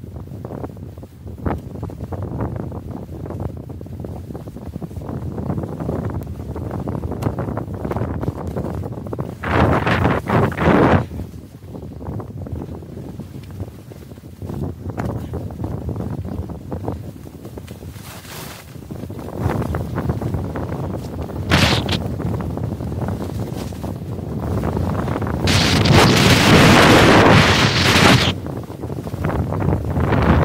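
Wind buffeting a handheld 360 camera's microphone as a skier goes downhill, mixed with the hiss and scrape of skis on groomed snow. It swells loudest briefly about ten seconds in and again for a few seconds near the end.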